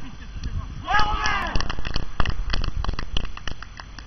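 A loud shout with a rising-then-falling pitch about a second in, followed by a run of irregular sharp knocks and crackles.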